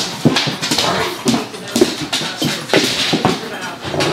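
A German shepherd and another dog play-fighting, with frequent short, irregular whines and yips and scuffling knocks as they grapple.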